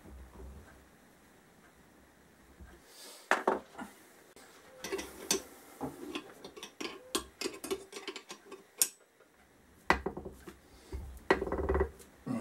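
Metal clinks and taps from a bearing puller's collet and spindle being worked into a motorcycle rear hub bearing. They start about three seconds in and come irregularly, some with a short ring.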